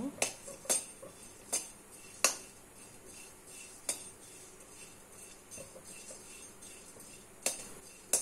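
Perforated metal skimmer clinking and scraping against a metal kadai while stirring chopped coconut being dry-roasted: about six sharp, separate clinks at irregular spacing, the loudest a little after two seconds, with quiet in between.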